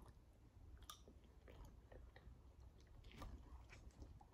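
Faint chewing of a mouthful of rice, with a few light clicks of a metal spoon in a plastic food tray.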